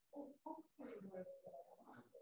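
Faint, indistinct talking in a small room, a few words in quick bursts.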